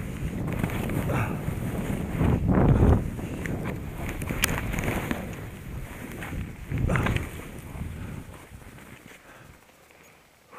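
Wind buffeting the camera microphone while skis scrape and chatter over choppy, packed snow, louder in surges about three and seven seconds in, with a single sharp tick midway. The noise fades over the last couple of seconds.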